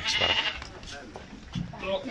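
A sheep bleats near the start, with people's voices and scuffling around it.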